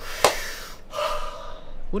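A sharp click, then a man's breathy gasp, followed by a short steady tone.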